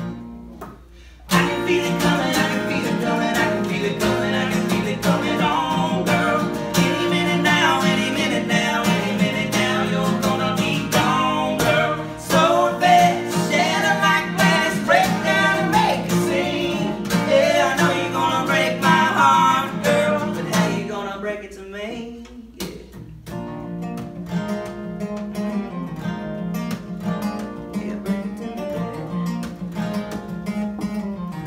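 Acoustic guitar and resonator guitar playing together live, with singing. The music comes in loud about a second in, with bending lead lines, and drops to softer strumming about two-thirds of the way through.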